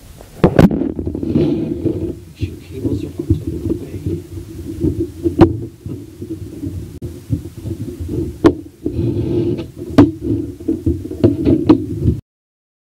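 Muffled rubbing and knocking close to the microphone, with several sharp clicks and taps, as the laptop bezel is screwed and snapped back on. The noise starts abruptly about half a second in and runs unevenly throughout.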